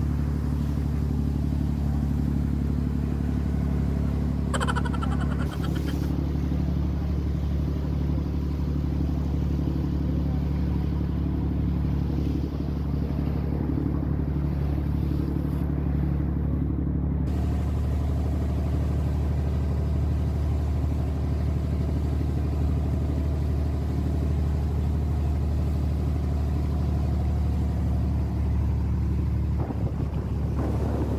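Engine of a small wooden passenger boat running steadily under way, a low, even drone, with water rushing along the hull. Its tone shifts slightly about seventeen seconds in.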